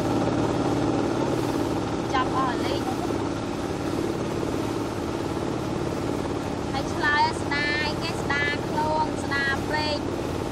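Steady drone of a boat's motor. A woman speaks over it briefly about two seconds in, and again through the last three seconds.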